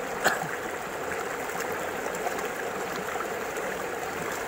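Steady noise of running water, with one brief click about a quarter of a second in.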